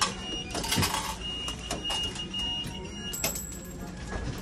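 Restaurant meal-ticket vending machine printing and issuing a ticket after its button is pressed: a click at the start, a faint thin steady tone while it works, and a cluster of clicks about three seconds in.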